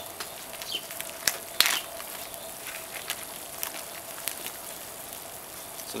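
Wood fire burning in a folding steel stick stove under a pot of water at a rolling boil: a steady hiss with a few scattered sharp crackles.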